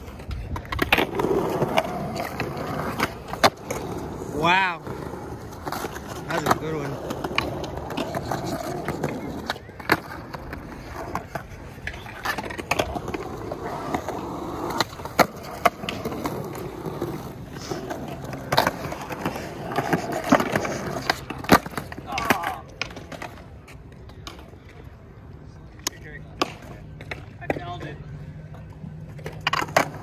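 Skateboards on a concrete flat: wheels rolling, and the sharp snap of tails popping and boards slapping down on landing. These repeat through many flatground trick attempts.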